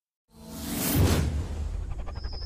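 A whoosh sound effect in an intro sequence: after a brief silence it swells up sharply over a deep bass, peaking about a second in, then eases back into the music bed.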